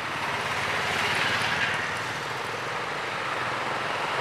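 Town street traffic, with motorcycles and auto-rickshaws passing: a steady rush of engine and road noise that swells briefly as a vehicle goes by about a second in.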